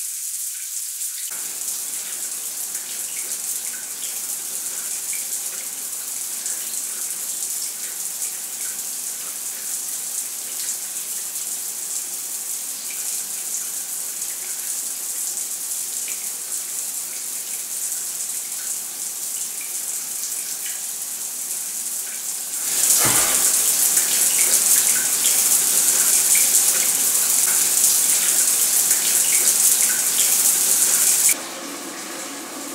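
Shower spray running steadily, heard muffled at first. About 23 seconds in it becomes suddenly much louder, with a brief thud.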